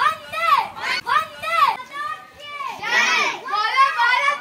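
Children's voices chanting together in short shouted phrases that rise and fall, about one a second.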